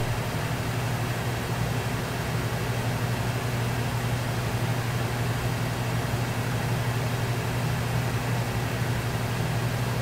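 A steady low hum with an even hiss over it, unchanging throughout, like a fan or mains hum in the room.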